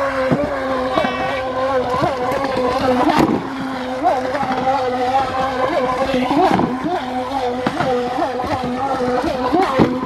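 Amewi Rapid Warrior Mono RC speedboat's electric motor running with a steady whine as it speeds across a pool, its pitch dipping and rising again many times, over the rush of water from the hull.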